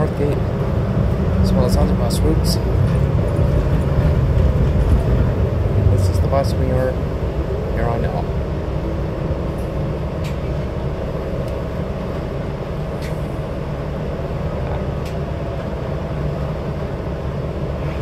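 Cabin noise of a moving New Flyer XD60 articulated diesel bus: a steady low engine and road rumble with a constant hum, heavier for the first several seconds and easing off after that.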